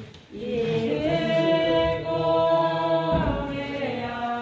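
A group of voices singing a slow hymn at Communion, with long held notes and a short breath just after the start.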